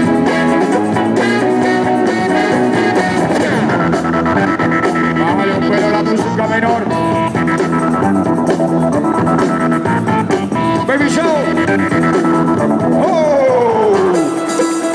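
Loud instrumental break track from the DJ over the hall's PA, played for breakdancers. It runs dense and steady, with a pitch sweep falling near the end.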